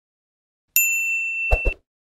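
A notification-bell ding sound effect from a subscribe-button animation: one bright chime about three quarters of a second in, ringing on a steady high tone for about a second. Two quick low thumps come near its end.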